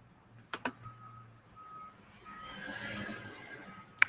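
A faint high electronic beep repeating several times in a short on-off pattern, preceded by two soft clicks.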